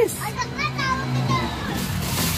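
Children's voices talking in short bits of speech, with music playing in the background.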